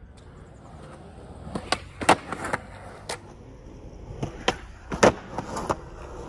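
Skateboard wheels rolling on concrete, broken by a string of sharp wooden clacks and slaps of the board, the loudest about two seconds in and again about five seconds in, as a frontside shove-it is popped off a concrete box ledge and landed.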